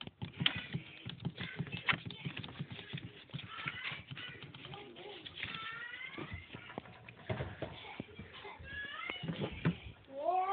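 Knocks, clicks and rustling from a phone being handled and swung about. A few short, faint vocal sounds come in around the middle and near the end.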